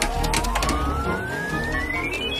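Laboratory centrifuge spinning up, its whine rising steadily in pitch with a fainter second glide below, over a low rumble; a few sharp clicks sound in the first second.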